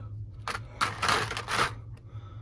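Hands handling a plastic action figure: a sharp click about half a second in as the head is worked off its neck peg, then about a second of plastic scraping and rubbing.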